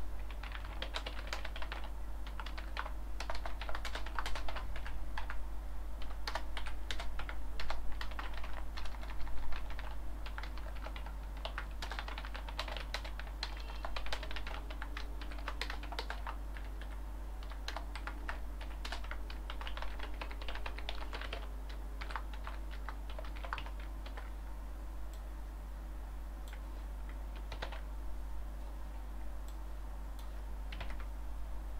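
Typing on a computer keyboard: rapid runs of keystrokes, busiest in the first half and thinning out to scattered presses later. A steady low hum runs underneath.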